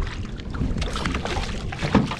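Wind buffeting the microphone over water slapping and splashing beside a small boat's hull, with a louder splash near the end as a landing net is plunged into the water to scoop up a hooked pink snapper.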